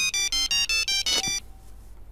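A phone ringing with an electronic melody ringtone: short beeping notes at about four a second. It stops about one and a half seconds in as the call is answered.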